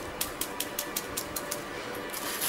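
Hand patting and tapping over loose sand on a craft board: a quick series of about ten sharp taps, roughly five a second.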